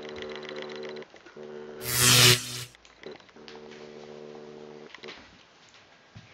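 Steady electrical buzz from the neon (EL) wire's battery inverter, running in three stretches of a second or two with short breaks between them. About two seconds in, a loud brief rushing noise sounds over it.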